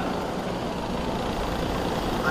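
Small 50cc youth motocross bikes idling at the start line: a steady low hum over outdoor background noise.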